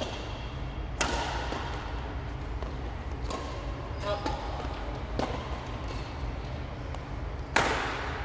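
Badminton rackets striking a shuttlecock during a doubles rally, with sharp hits about every two seconds and the loudest hit a little before the end. The hits echo in a large hall over a steady low rumble.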